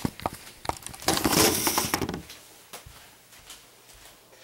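Handling noise from a video camera being set down: a few sharp knocks and clicks, then a louder rustling scrape of a hand against the camera from about one second to two, then a single faint knock.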